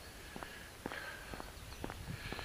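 Faint footsteps of a man walking on a paved lane, about two steps a second, over a low steady rumble.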